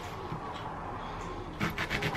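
Knife cutting strawberries on a wooden chopping board: a low lull, then a few quick taps of the blade on the board about one and a half seconds in.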